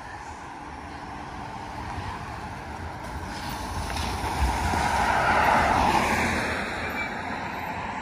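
Cars passing on a rain-wet asphalt road: tyre and engine noise swells to its loudest about five to six seconds in, then fades as the traffic goes by.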